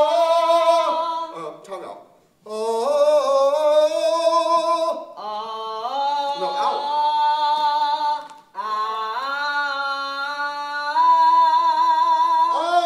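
A young man singing unaccompanied, holding long notes in four phrases with short breaths between them, the pitch stepping upward within each phrase. The voice teacher hears it as too nasal from forcing past the tongue, then freer once the tongue gets out of the way and the throat relaxes.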